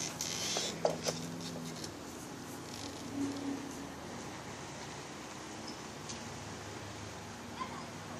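Quiet outdoor background noise, with a couple of faint clicks about a second in and a faint low hum that comes and goes in the first few seconds.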